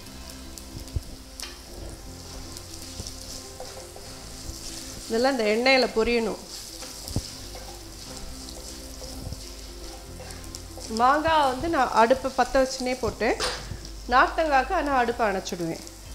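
Peanuts, dals, curry leaves and chillies sizzling in hot oil in a non-stick kadai as they are stirred, a steady hiss throughout. A woman's voice comes in over it three times, about five seconds in and again from eleven seconds.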